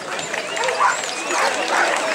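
Belgian shepherd dogs barking, several short high calls, over the chatter of a walking crowd.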